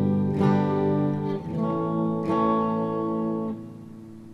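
Electric guitar strumming chords through a Korg AX1G multi-effects pedal set to chorus. Several chords ring out, with fresh strums under half a second in and just past two seconds, then they are cut short about three and a half seconds in.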